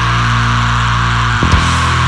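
Heavy metal music: a distorted electric guitar holds a low chord, with a pair of drum hits about one and a half seconds in.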